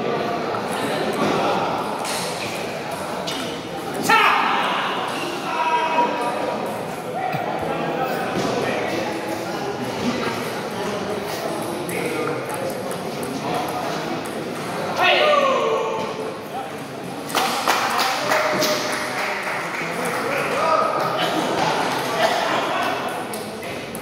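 Table tennis ball clicking on paddles and the table in quick rallies, over steady chatter in a large, echoing hall. Occasional louder shouts rise over the voices, about four seconds in and again near the middle.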